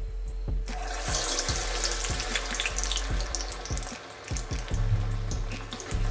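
A cassava vade patty slides into hot oil in a deep aluminium pan. The oil bursts into a dense, hissing sizzle and bubble less than a second in, and keeps frying to the end.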